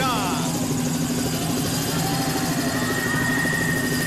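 A helicopter sound effect plays steadily over the arena loudspeakers as a wrestler's entrance. A thin steady high tone joins about halfway through.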